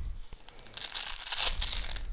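Hook-and-loop (Velcro) closure on a fabric knife pouch being pulled open: a crackling rip that starts just under a second in and lasts about a second.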